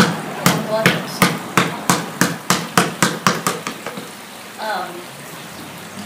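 A basketball bouncing on a concrete floor, about a dozen bounces that come quicker and fainter and stop a little past halfway.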